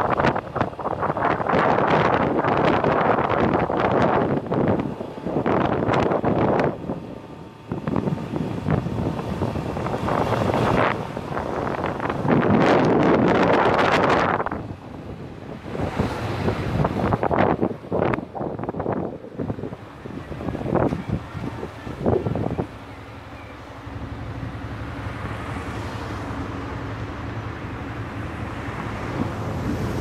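Wind buffeting the microphone of a motorcycle riding at speed, in loud gusts. After about two-thirds of the way through, the wind drops away and the Yamaha FZ 150's single-cylinder engine is heard running steadily at low speed.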